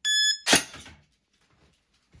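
Electronic shot-timer start beep from the STAGE target app, a steady high tone about a third of a second long, followed a moment later by a single sharp crack of an airsoft rifle shot hitting the target.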